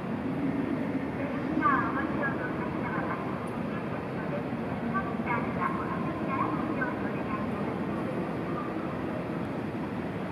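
Ambience of a station concourse: a steady low rumble with indistinct voices of people nearby, which come up briefly about two seconds in and again around five to seven seconds. No music is playing.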